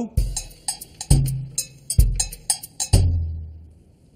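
A drum beat: a heavy bass drum about once a second with lighter, sharper hits between. The last bass note rings on and fades out shortly before the end.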